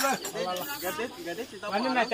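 Several people talking over one another, with a steady, pulsing high-pitched insect trill, like crickets, underneath.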